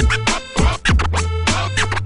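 Instrumental hip hop beat with turntable scratching over a deep bass line and drums.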